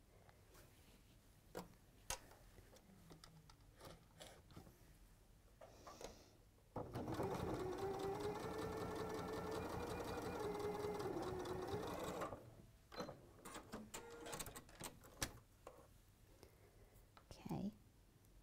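Elna domestic sewing machine stitching quilt pieces together, running steadily for about five seconds in the middle, picking up speed as it starts and slowing before it stops. Small handling clicks come before and after the stitching.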